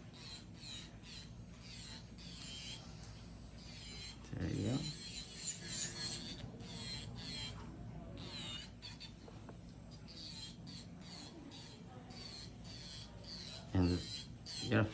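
Electric nail drill running, its cone-shaped bit sanding an acrylic nail along the cuticle line, over a steady low hum. Repeated short high squeaky chirps run throughout, and a brief low voice-like sound comes about four seconds in.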